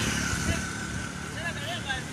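Street background: steady traffic noise with faint voices.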